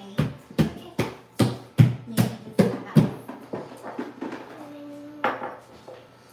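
Whisk knocking against a stainless steel mixing bowl as cookie dough is stirred by hand, about two to three knocks a second, growing weaker after about three seconds.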